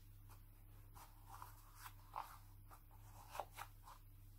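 Quiet room with faint rustles and scratches of baby clothes being handled, several short ones from about a second in, the loudest near the end.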